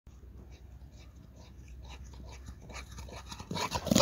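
A large dog running up from a distance, its paw-falls and breathing growing louder as it closes in.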